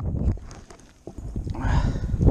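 Wind buffeting the microphone in low rumbling gusts that drop away briefly about half a second in and pick up again after a second, with a few light knocks from the hand-held camera.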